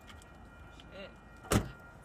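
A single sharp thump against a car about one and a half seconds in, either a knock on the window or a door being shut.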